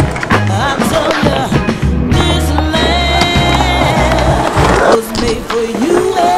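A music track with a pulsing bass line and melody, with skateboard sounds mixed under it: wheels rolling on concrete and scattered sharp board clacks.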